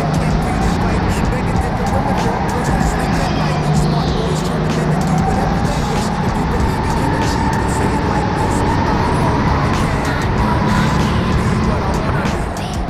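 Go-kart running at speed, its pitch slowly rising and falling through the corners.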